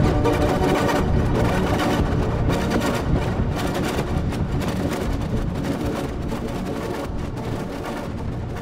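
Electric guitar played through Guitar Rig 3 effects, processed into a dense experimental texture with a pulsing rhythm and a heavy, percussive low end. It grows gradually quieter toward the end.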